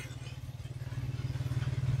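A low engine hum with a fine, even pulse, slowly growing louder.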